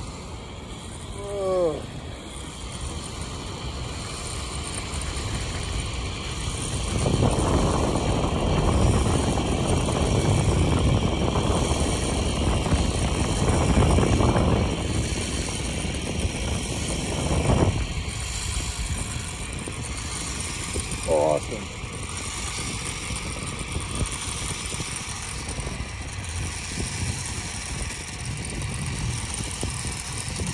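Zip line trolley running along a steel cable with rushing air, a continuous whirring rush that swells louder through the middle of the ride and eases off again. A brief falling voice sound comes near the start and again about twenty seconds in.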